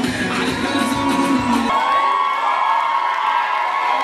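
Dance music with a heavy bass cuts off a little under two seconds in, and an audience cheers.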